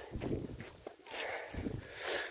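Faint footsteps in soft dune sand, a few soft irregular steps.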